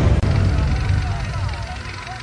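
Racing car engine noise mixed with a voice, growing steadily quieter.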